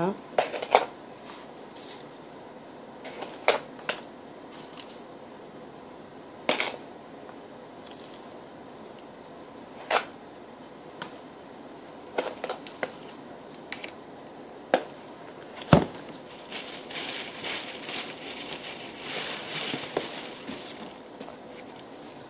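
A spoon scooping sugar from a plastic sugar canister and sprinkling it over bread in a foil pan, heard as scattered sharp clicks and scrapes. About three-quarters of the way in comes a longer stretch of crinkling and rustling.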